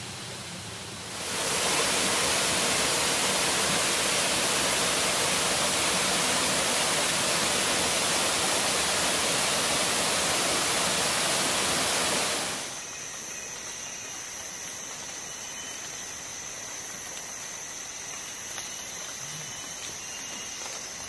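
Rainforest waterfall rushing, a loud steady wash of falling water from about a second in, cutting off at about twelve seconds. After it, a much quieter steady hiss of forest ambience with thin high steady tones.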